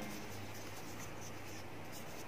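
Faint, even scratchy rubbing of fingers handling a crocheted polyester-yarn panel while a yarn end is worked in, over a steady low hum.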